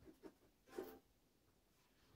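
Near silence: room tone with three faint soft taps in the first second.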